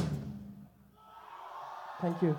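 Full rock band, drums and electric guitars through a PA, ending its song: the last hit dies away to near silence in under a second. A faint crowd cheer then starts to build.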